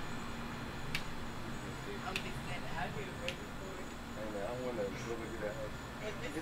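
Faint, distant voices of people talking, over a low steady background hum, with a few light clicks.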